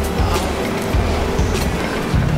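Background music laid over a steady low rumble of outdoor traffic noise, with a few brief knocks.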